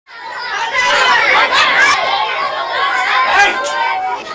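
Many children chattering and talking over one another at once, a continuous babble of young voices.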